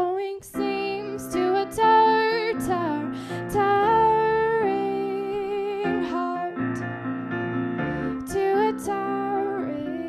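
A woman singing a slow song with piano accompaniment, holding some long notes with a slight waver.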